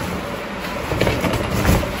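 Rummaging through a plastic bag: plastic rustling and handling noise, with a couple of light knocks about a second in and near the end.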